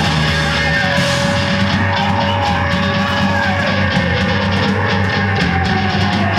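Loud live instrumental heavy rock: distorted electric guitar, drum kit and noise piano playing together, with the drums keeping an even beat from about a second and a half in. A held tone slides slowly down in pitch through the second half.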